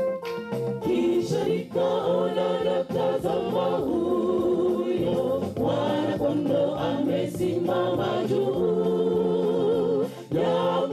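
Choir singing a gospel song, coming in about a second in after a few keyboard notes.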